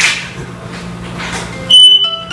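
A smoke alarm gives one short, loud, high-pitched beep near the end, over a low steady hum. Piano music starts just as the beep ends.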